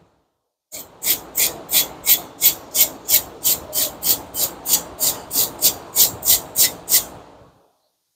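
Steel wire brush scrubbing a brake caliper bracket in quick back-and-forth strokes, about three a second, each a short scratchy rasp. The scrubbing starts just under a second in and trails off near the end.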